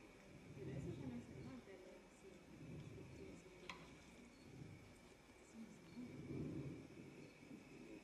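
Near silence with faint, low voices murmuring in a hall and a single short click near the middle.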